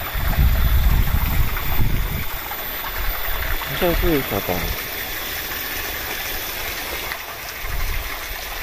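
Spring water pouring from a bamboo pipe spout and splashing into a shallow rocky pool, a steady rush of splashing. A low rumble sits under it in the first two seconds, and a brief voice sounds about four seconds in.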